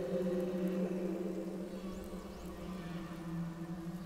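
Slow ambient relaxation music of held low drone notes that slowly fade, with two faint high arching whistles about halfway through from dolphin calls mixed into the track.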